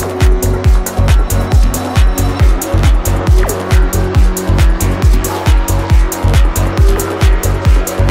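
Psytrance music playing at full volume: a steady kick drum about twice a second with a rolling bass line between the beats and hi-hats over the top. A falling synth sweep comes in about three and a half seconds in.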